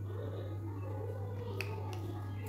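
A steady low electrical hum over faint room noise, with two small sharp clicks near the end.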